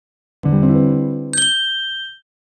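Short logo sound for an intro ident: a low, rich synth tone enters, then about a second in a bright chime-like ding sounds and rings out.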